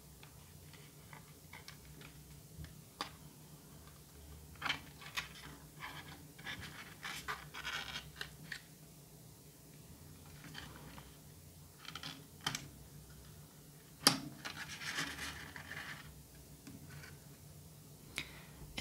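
Handling of a moulded plastic packaging tray as a lavalier microphone and its cable are worked free: scattered small clicks and brief rustles of plastic and cord, with a sharp click about fourteen seconds in.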